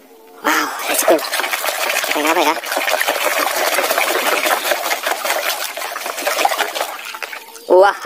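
Water splashing and sloshing hard in a plastic basin as a muddy plastic mask is scrubbed by hand under the water. It is a dense, continuous churning that sets in about half a second in and dies down just before the end.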